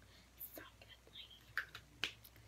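Mostly quiet, with a few faint, short breathy mouth sounds and small handling noises scattered through it.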